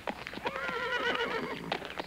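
A horse whinnying: one quavering call that starts about half a second in and lasts about a second, over scattered hoof clops.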